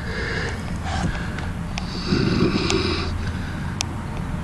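Soft breathing close to the microphone, with two audible exhalations, one at the start and a longer one about two seconds in, over a steady low hum.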